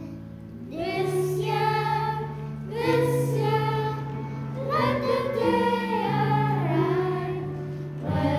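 A group of children singing a hymn-like song in unison, phrases with long held notes, over a low sustained instrumental accompaniment.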